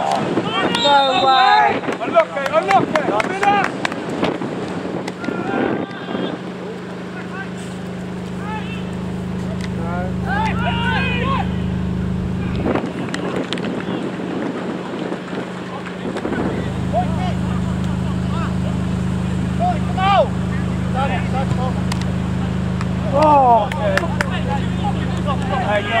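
Scattered distant shouts from players and spectators on a football pitch, over a steady low mechanical drone made of a few held tones. The drone drops out for a few seconds around the middle, then comes back.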